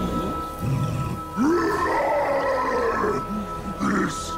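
A cartoon monster's drawn-out, distorted scream, rising sharply then slowly falling away, over background music.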